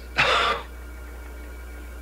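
A man's single short, breathy scoff about a quarter second in, then only a steady low hum.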